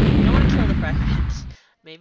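A loud explosion sound effect: a heavy blast with a deep rumble that dies away and cuts off about one and a half seconds in.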